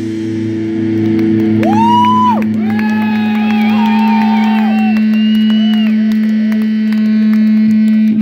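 Electric guitar amp feedback after a metal song: a steady low tone is held throughout. From about two seconds in, higher tones glide up, hold and waver before fading out.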